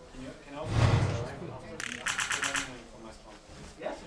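Title-graphic sound effects: a whoosh with a low boom about a second in, then a fast run of sharp clicks, about ten a second, lasting under a second.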